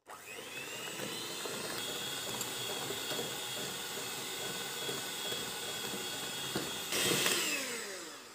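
Electric hand mixer beating a thin cake batter in a plastic bowl. The motor whines up to speed at the start and runs steadily, gets louder shortly before the end, then winds down as it is switched off.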